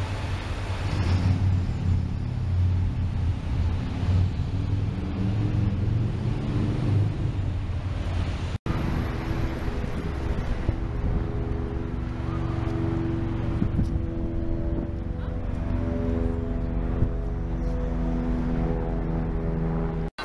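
Road traffic noise: a heavy low rumble of vehicles running past, with steady low droning tones through the second half that shift pitch now and then.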